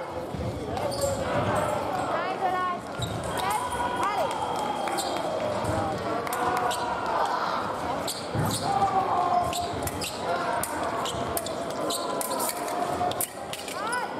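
Fencers' shoes thudding and squeaking on the piste during footwork, with many sharp footfalls and a few short rising squeaks. A hubbub of voices fills the large hall.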